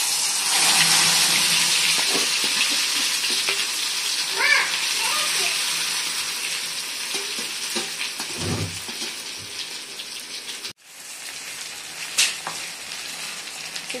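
Marinated mutton brain pieces sizzling in hot oil in an aluminium kadai: a loud sizzle that starts suddenly as they go into the oil, then slowly dies down as they fry.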